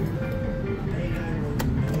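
Three-reel Pinball slot machine spinning its reels, with short electronic tones over the casino's background of other machines' music and voices. A sharp click about one and a half seconds in as the reels come to a stop.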